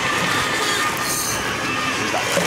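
Boat engine running steadily, under a constant rush of wind and water noise.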